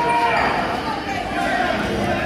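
A long, drawn-out shout from a spectator or coach over a steady murmur of crowd voices in a gym.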